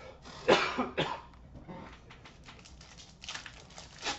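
A person coughs twice in quick succession, then trading cards and foil pack wrappers rustle and click as they are handled.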